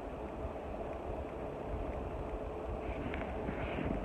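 Steady low rumbling background noise with a faint thin hum through most of it, picked up by a phone microphone; no distinct events.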